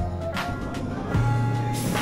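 Background music: a mellow track with held bass notes and a light beat.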